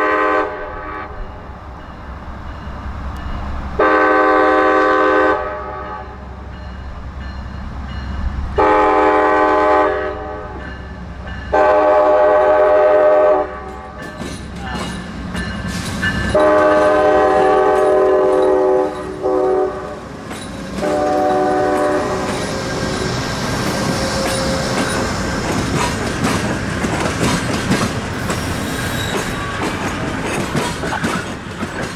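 Amtrak Auto Train's GE Genesis P42 diesel locomotive approaching and passing: its air horn sounds about six long blasts, several notes at once, over the first twenty-odd seconds, with the engine's rumble between them. From about 22 seconds on, the double-deck Superliner cars roll by with steady wheel clatter.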